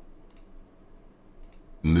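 Two soft computer mouse clicks, the first about a third of a second in and the second about a second and a half in.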